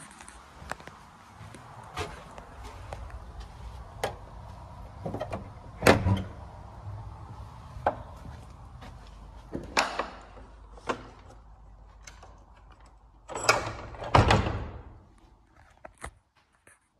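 A door being handled: separate latch clicks and knocks, a loud knock about six seconds in, and a heavy thud near the end as it is shut, followed by a lingering echo.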